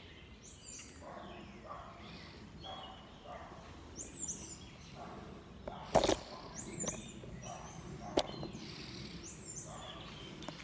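A songbird singing short, high, repeated phrases every few seconds against faint outdoor background noise. About six seconds in there is a loud, brief knock and rustle from the phone being moved, and a sharp click follows about two seconds later.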